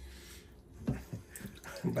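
Whey trickling and dripping back into a pot of whey as a ball of fresh cheese curd is squeezed by hand.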